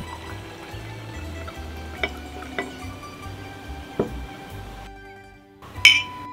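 Red wine poured from a bottle into a stemmed glass, with a few light clicks, over soft background music; near the end two wine glasses clink together once in a toast, with a brief ring.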